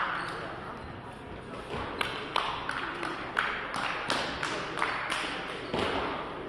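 Voices in a large, echoing sports hall, with a run of sharp knocks about three a second starting about two seconds in.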